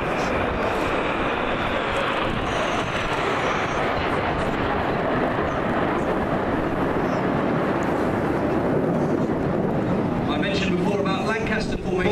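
Steady jet noise from the Red Arrows' formation of BAE Hawk T1 jets flying past in the display.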